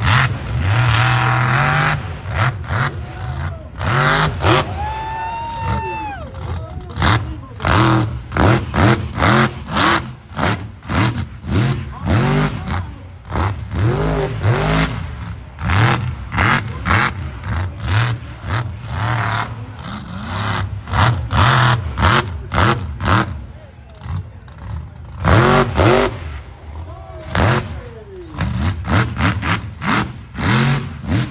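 Lifted mud truck's engine revving hard in rapid, repeated surges as it runs the freestyle track, with spectators' voices mixed in.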